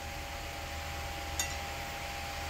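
Steady room noise, an even hiss with a low hum and a faint steady tone, broken once by a brief soft click about one and a half seconds in.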